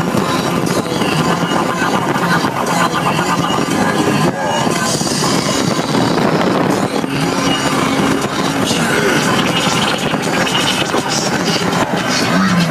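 Steady wind and road noise of a car moving at highway speed, heard through an open side window, with rap music playing along with it.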